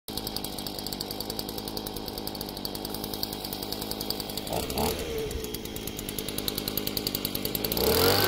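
Gasoline leaf blower's small two-stroke engine running at low speed with a steady rhythmic beat, briefly joined by a short higher-pitched sound about halfway through, then getting louder near the end as it is brought up to blow starting air into a homemade pulsejet.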